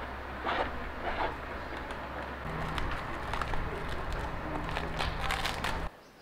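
Handling of a plastic power adapter and its cord as the plug is pushed in: scattered clicks and rustles, a few early and a cluster near the end, over a steady low hum.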